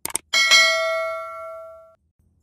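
A quick double mouse-click sound effect, followed by a bell 'ding' sound effect that rings with several bright partials and fades for about a second and a half before cutting off: the sound of a subscribe-button and notification-bell animation.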